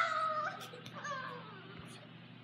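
A boy's high-pitched wailing cry, loudest at the start and sliding slowly down in pitch, then a second, shorter wail about a second in.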